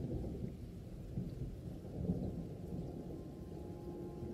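A quiet, low, steady rumble with no distinct events, with faint sustained tones coming in near the end.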